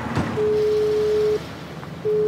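Telephone ringback tone: a steady single-pitch beep about a second long, then a short gap and the same beep again, as an outgoing call rings before it is answered.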